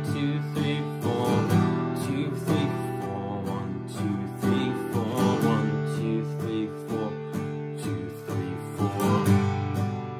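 Acoustic guitar strummed in steady downstrokes, about two a second, through the C–D–E minor chord progression.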